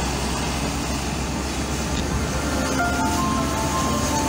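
Steady low road and engine rumble inside a moving car. Near the end a melody of short chiming notes begins, stepping up and down in pitch.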